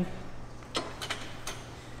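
A few short knocks and clicks, three within about a second, as a man sits down on the padded seat of a gym leg extension machine and settles against it.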